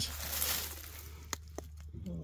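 Soft rustling for about the first second, then a few faint light clicks.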